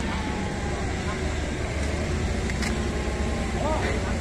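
Forklift engine running steadily with a low rumble, with a few brief voices heard near the end.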